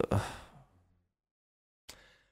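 A man lets out a breathy 'ugh' sigh that fades out within about half a second, followed by a single brief click near the end.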